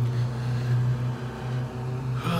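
Steady low hum of an idling vehicle engine.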